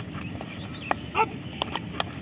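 A man's short shouted drill call about a second in, one of a series he repeats every two seconds to pace the exercise. Around it, a few sharp taps over a steady open-air background hiss.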